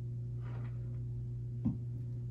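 Steady low electrical hum from bench electroplating equipment, with one short click near the end.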